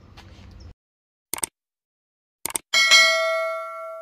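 Sound effect of a subscribe-button animation: two pairs of quick mouse clicks, then a single bell ding that rings and fades over about a second and a half.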